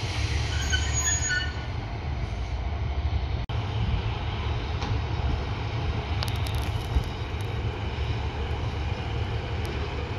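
British Rail Class 153 diesel railcars idling at the platform: a steady low rumble from their underfloor Cummins diesel engines. A few brief high squeaks sound about a second in.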